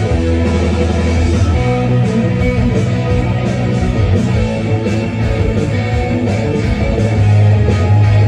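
Electric guitar played live in an instrumental rock piece: held melodic notes over a heavy low end.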